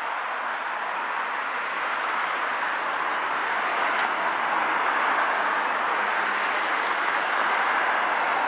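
Street traffic on a wet road: a steady hiss of car tyres and engines passing close by, growing louder over the first few seconds.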